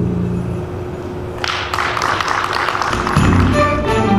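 A school orchestra's closing notes ringing out in the hall, followed from about a second and a half in by a burst of audience applause.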